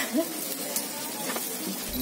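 Steady sizzle of takoyaki frying on a hot takoyaki griddle, with a faint voice briefly near the start.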